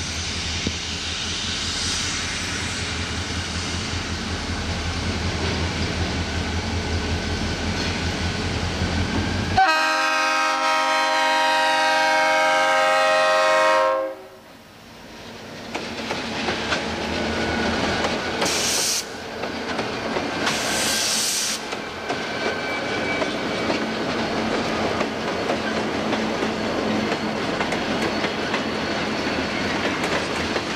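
SOO Line diesel freight locomotives approaching with a steady engine rumble. About ten seconds in they sound a multi-note air horn for about four seconds, which cuts off abruptly. The locomotives and freight cars then roll past close by, with engines rumbling and wheels clacking over the rail joints.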